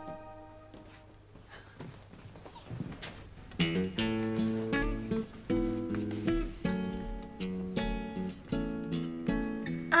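Soft background music played on acoustic guitar, a melody of plucked notes that comes in about three and a half seconds in after a quiet opening.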